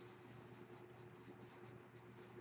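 Near silence: faint, irregular scratchy rustles of handling noise over a steady low hum.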